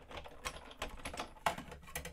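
Sizzix Big Shot die-cutting machine being hand-cranked to feed a die sandwich through its rollers, giving a rapid run of irregular clicks and creaks, with the loudest click about one and a half seconds in.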